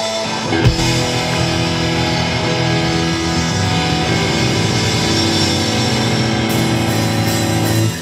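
Rock band playing live, led by electric guitar. The full band comes in on a loud hit about half a second in and then holds sustained chords.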